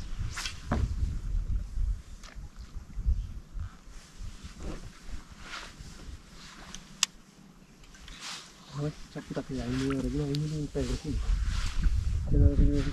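Wind on the microphone as a low, steady rumble, with several short swishes of fishing rods being cast and a sharp click about seven seconds in. A man's voice is heard briefly near the end.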